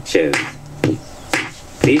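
Electronic novelty song with a spoken-sung voice over a snapping beat, about two snaps a second. The voice finishes a line just after the start, and the next line begins at the very end.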